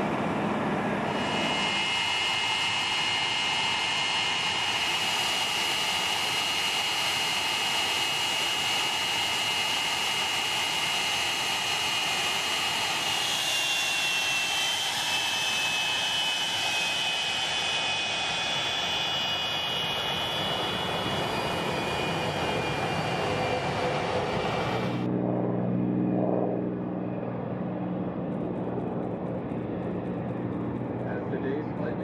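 F-86 Sabre's single jet engine running: a steady rushing noise with a high-pitched whine that shifts in pitch about halfway through. Near the end it changes to a duller, deeper engine sound.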